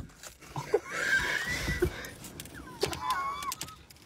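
A woman's high-pitched, wavering squeals of laughter, in two stretches about a second apart.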